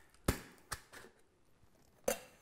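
Metal cocktail shaker tins being handled after a quick shake with crushed ice: one sharp knock, then two fainter clicks, then near quiet.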